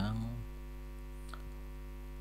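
Steady low electrical mains hum, with one faint click a little past a second in.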